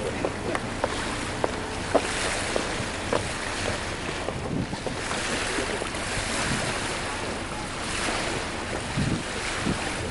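Wind rushing over the camcorder microphone with water lapping and washing, swelling and easing. There are a few light knocks in the first three seconds.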